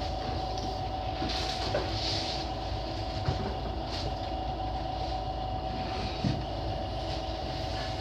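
Pottery wheel's motor running with a steady hum while a lump of wet clay is pressed and coned by hand on the spinning wheel head during centring.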